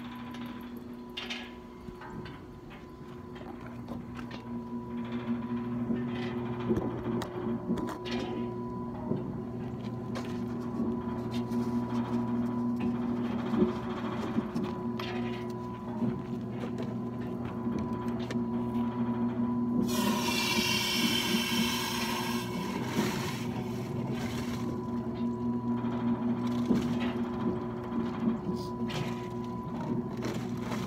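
An oil-well pumpjack running with a steady hum, with scattered knocks and clicks from the pumping unit. About twenty seconds in, the wellhead sample valve is opened, and gassy crude and load water hiss and spray into a plastic jug for about three seconds.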